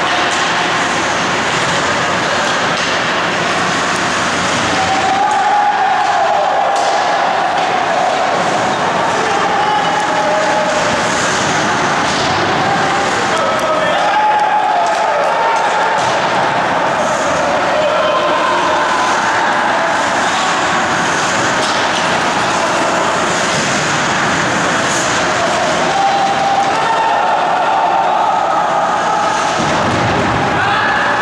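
Ice hockey rink ambience during a game: a steady loud wash of arena noise with indistinct voices over it, and several drawn-out calls about five seconds in, around the middle, and near the end.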